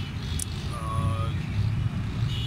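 Low steady outdoor background rumble, with a short voiced hesitation from a man about a second in.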